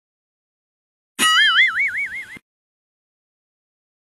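A cartoon "boing" sound effect: one warbling tone a little over a second long, its pitch wobbling up and down about four times a second, starting just over a second in and cutting off suddenly.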